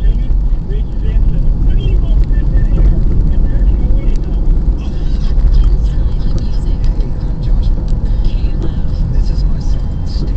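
Steady low rumble of a moving car's engine and tyres, heard from inside the cabin.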